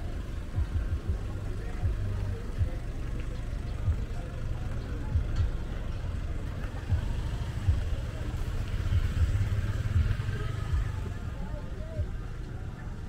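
Wind buffeting the microphone in a steady low rumble with irregular knocks, as a small motorcycle rides past partway through.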